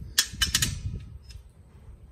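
A quick run of sharp clicks and knocks in the first second, about four or five close together, as a strip of half-inch plywood is handled and test-fitted. Only faint handling rustle follows.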